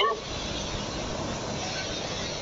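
A steady, even background noise with no distinct events, following the end of a spoken word at the very start.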